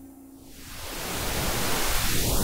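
Television static hiss fading in and swelling steadily louder, used as a transition sound effect.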